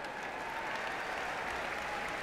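Large crowd of convention delegates applauding steadily.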